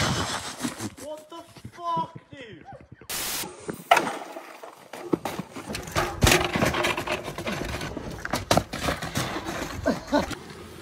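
Brief wordless shouts and exclamations from people watching a mountain-bike crash. Then comes a rough, noisy stretch of a bike on a dirt track, with scattered knocks and scrapes.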